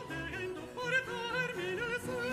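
A high male opera voice, a countertenor, singing a florid Baroque aria line with vibrato and quick runs of notes, accompanied by a Baroque string orchestra.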